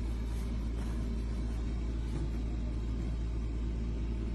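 Steady low engine rumble, as of a vehicle idling nearby, holding level without revving.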